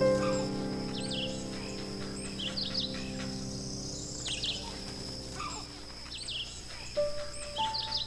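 Birds chirping in short, repeated calls about once a second, over a steady high insect buzz, with soft background music whose sustained notes fade away and give way to new notes near the end.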